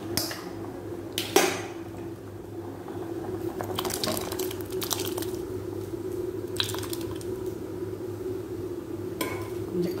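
Stainless steel kitchen vessels clinking and knocking on a glass-top gas stove: a sharp knock about a second in, then scattered clinks, over a steady low hum.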